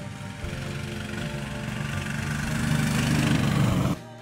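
The 7 hp engine of the Vebr Huge mini tracked ATV running as the machine drives along, growing steadily louder and then cutting off abruptly.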